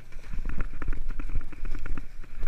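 Water splashing and slapping at the side of a boat in irregular strikes, over a steady low rumble.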